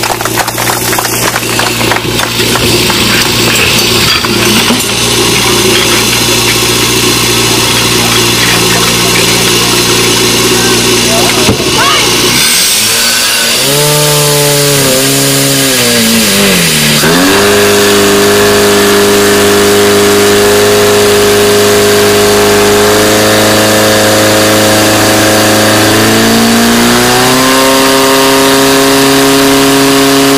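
Engine of a portable fire pump running at high revs. About halfway through its pitch wavers and sags as the pump takes up the load of water into the hoses. It then settles into a high, steady note that steps up slightly twice in the last third, with the hoses now delivering water to the jets.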